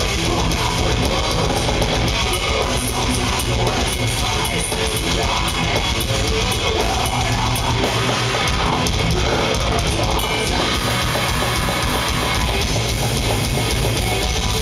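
Metal band playing live: distorted electric guitars, bass and drum kit in a loud, steady wall of sound.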